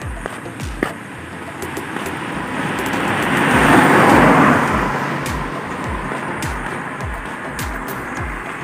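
A red hatchback drives past close by; its engine and tyre noise swells to a peak about four seconds in and then fades away. Under it run regular low thumps about twice a second, from walking footsteps jolting a handheld phone.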